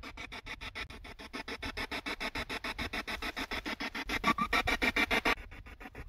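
Ghost-hunting spirit box sweeping through radio stations: a fast, even chopping of radio static, about ten clicks a second, with the hiss growing thinner near the end.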